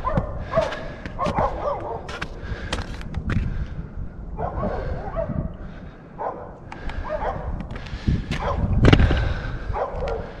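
Short animal calls and whines, repeated on and off, over scattered sharp knocks and handling noise.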